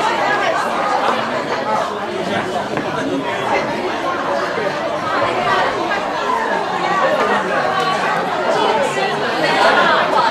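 Chatter of many people talking at once, a steady, indistinct hubbub of overlapping voices with no single speaker standing out.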